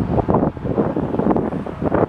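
Strong wind buffeting the microphone: a loud, low rumbling noise that rises and falls with the gusts.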